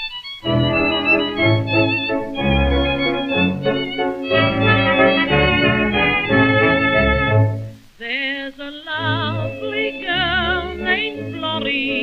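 Band accompaniment on an early-1930s record, playing sustained chords over a regular bass beat between the two songs of a medley. It breaks off briefly about eight seconds in, and the next tune starts with a strongly wavering melody line.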